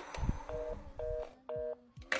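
Telephone busy tone: three short two-tone beeps about half a second apart, after a brief clunk at the start. It signals a dead line, with the call not answered.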